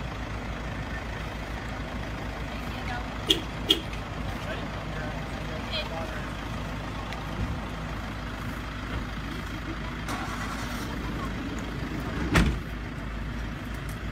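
Motor vehicle engine idling with a steady low rumble. There are two short clicks a few seconds in and one louder knock near the end.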